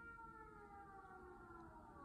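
Faint, long call of a film sauropod dinosaur: several tones together, sliding slowly down in pitch, played back quietly through a speaker.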